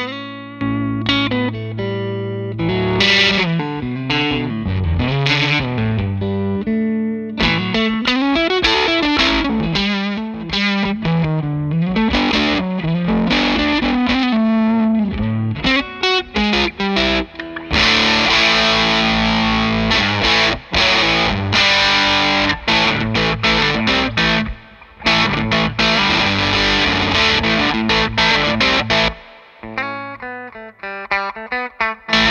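Electric guitar played through the Electronic Audio Experiments Model feT, a transistor preamp pedal modelled on the Sunn Model T amp, with a fuzzy distortion. It plays a riff of single-note lines with slides and bends, then switches to heavier strummed chords a little over halfway through, broken by a few short stops.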